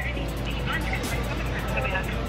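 Restaurant room sound: background music under faint voices and a steady low hum.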